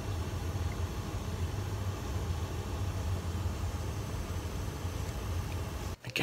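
Steady low hum under an even hiss, with no distinct events: continuous background machine or room noise.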